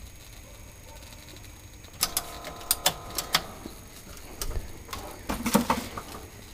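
Vintage CRT television making an odd crackling noise: irregular sharp clicks start about two seconds in, with a faint steady buzz under them. The owner suspects it comes from the set's speaker or a connection.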